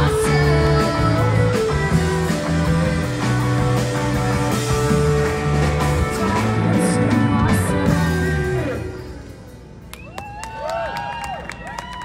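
Live rock band playing: a woman singing over electric guitar and drums. The song ends about nine seconds in, and the crowd claps and cheers.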